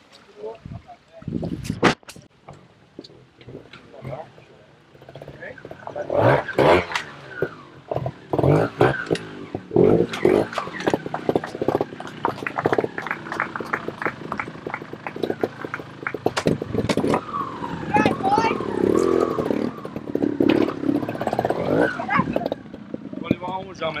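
A trials motorcycle's engine blipping and revving in short bursts as it is ridden over rocks, with sharp knocks mixed in, and voices in the background. The engine sound builds from about five seconds in.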